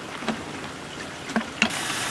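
Water flushing through a Graco Magnum X5 airless sprayer's hose into a plastic bucket during prime-mode cleanout, with a few light knocks. Near the end a steady hiss sets in.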